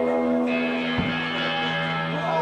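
Electric guitar ringing out sustained notes through an amplifier, with a single sharp knock about a second in.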